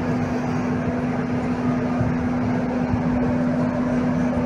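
A steady, unbroken rushing noise with a constant low hum running through it.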